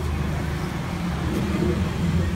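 Steady low rumble of background noise, with no clear events.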